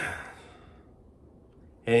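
A man's breathy sigh: a short exhale that fades within about half a second, then quiet until he starts to speak near the end.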